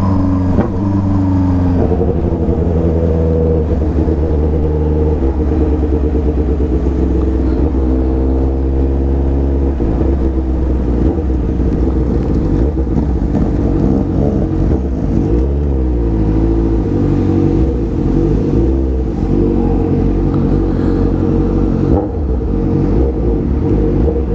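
Honda Hornet 600 motorcycle's inline-four engine running at low, fairly steady revs as the bike rolls along slowly, with a brief rise and fall in revs about midway.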